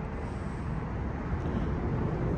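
Steady low rumble of outdoor background noise, rising slightly in level.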